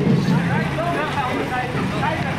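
Babble of a crowd, many people talking at once with no single voice standing out; the drumming before it fades out in the first moments.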